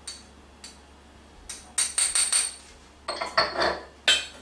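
Metal spoon clinking against a stainless steel mixing bowl: a quick run of ringing taps a couple of seconds in, then a few more near the end.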